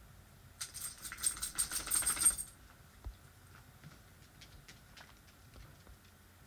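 A burst of rapid, jingling clicks with a high metallic ring, starting about half a second in and lasting nearly two seconds, followed by a few faint light ticks.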